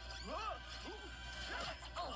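Cartoon fight soundtrack: background music with a crash, and tones that swoop up and down in pitch.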